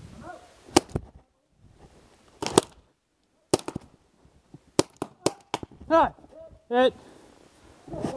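Exchange of paintball pistol fire: sharp single pops, one about a second in, then more in quick succession over the next few seconds. A man's short shout comes near the end.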